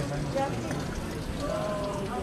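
Indistinct chatter of passers-by in a street crowd: several voices at once, none clearly in front, over a steady background din.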